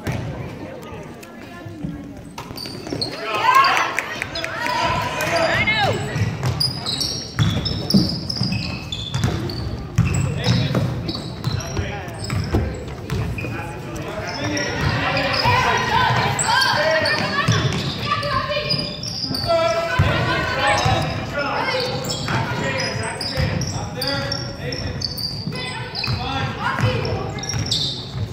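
Basketball bouncing on a hardwood gym floor during play, with many short sharp strokes, mixed with indistinct shouting voices from spectators and players.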